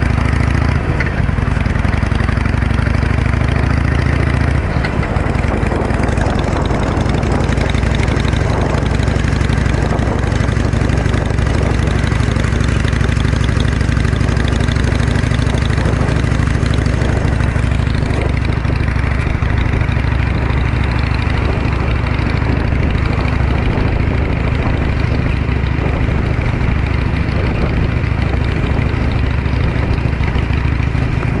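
2009 Harley-Davidson 883 Iron's air-cooled V-twin idling, then pulling away about four seconds in and running steadily as the bike rides along.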